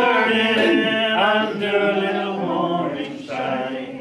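Unaccompanied group singing of a folk-song chorus: a man's voice with other voices joining in, on long held notes, easing off near the end.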